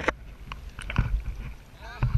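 Kayak paddling: water sloshing and a low wind rumble on the microphone, with a few faint knocks of the paddle against the clear plastic kayak hull about half a second and a second in.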